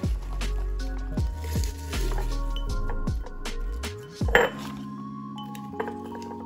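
Background music with a steady beat, over the soft crunch of spinach leaves being pushed by hand into a glass mason jar, with short clinks of the glass and one louder knock about four seconds in.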